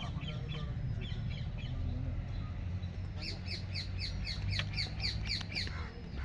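A bird calls a quick run of about eleven short, falling notes, roughly four a second, starting about halfway in. Fainter chirps come before it, and a steady low rumble runs underneath.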